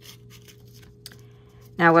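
Faint rustling and light taps of cardstock pieces being handled, with a small click about a second in, over a faint steady hum. A woman starts speaking near the end.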